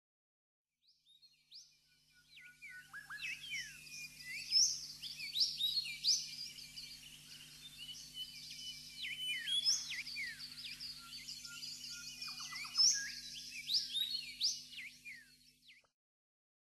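Many small birds chirping and twittering together in a busy chorus of quick rising and falling calls, over a faint low steady hum. It fades in after about a second and fades out just before the end.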